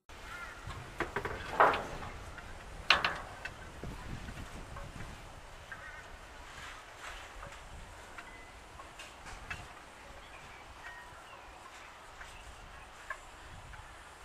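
Birds calling outdoors: two loud, short calls about one and a half and three seconds in, then fainter scattered calls and clicks.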